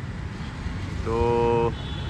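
A man's voice drawing out a single word, over a steady low background rumble.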